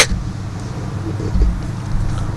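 A pause in speech filled by a steady low background rumble with faint hiss.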